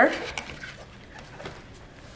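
The end of a spoken word, then faint soft taps and rustles of white paperboard soap boxes being closed and handled.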